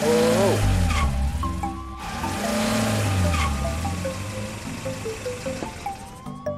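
Cartoon ambulance's engine revving with its tires squealing and spinning in a loud hissing rush over a low rumble, surging twice: at the start and again about two seconds in. Light background music plays throughout.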